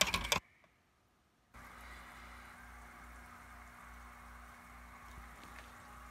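A few sharp handling knocks, then a sudden second-long drop-out to silence, then a steady low background hum of room noise with no distinct events.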